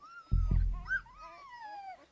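A deep boom about a quarter of a second in, under several high whistling tones that slide downward and overlap: a dramatic sound-design sting laid over the cut to the cliff.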